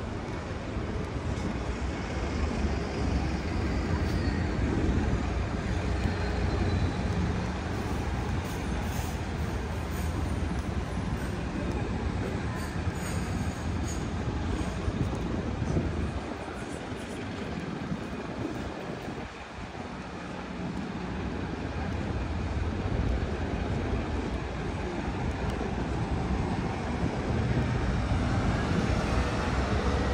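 Road traffic on a city street: a continuous low rumble of passing vehicles that eases off briefly about two-thirds of the way through, then builds again near the end.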